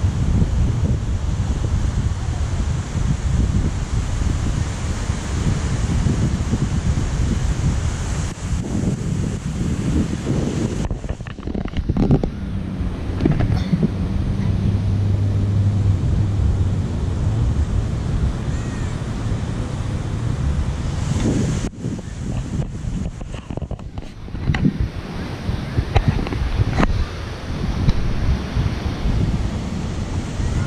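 Wind buffeting the microphone in gusts, over the rush of ocean surf.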